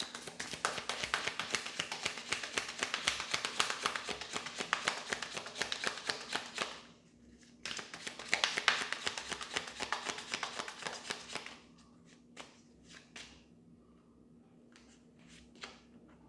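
A Hidden Truth oracle card deck being shuffled by hand: two long runs of rapid, crisp card clicks, the first about seven seconds long and the second about four, then a few scattered taps as the shuffling stops.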